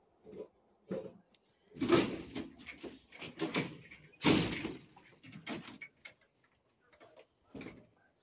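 A door sliding and rattling: a run of irregular scrapes and knocks, loudest about two and four seconds in.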